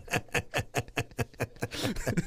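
A man laughing hard in rapid, rhythmic 'ha-ha-ha' bursts, about five a second, each dropping in pitch. The laughter tapers off after about a second and a half.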